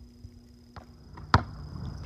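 Quiet room tone with a faint steady hum, broken by one sharp click a little over a second in.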